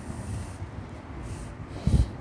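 A man breathing close to a clip-on microphone, with a sharp nasal intake of breath near the end, over a low rumble.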